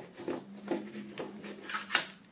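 Plastic CD jewel case being handled: a few faint taps and rustles as the booklet goes back in, then a sharper plastic click near the end.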